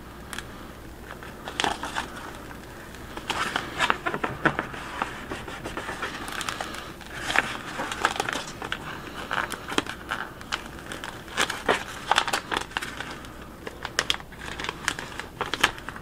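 Clear vinyl transfer tape being slowly peeled back off adhesive vinyl on a plastic bucket, crackling and crinkling irregularly as it lifts.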